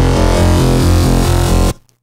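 Sytrus FM and ring-modulated bass synth patch holding a low, buzzy note with a pulsing movement. The ring-modulation amount is turned down, so the tone is smoother than it is with full ring modulation. The note cuts off sharply near the end.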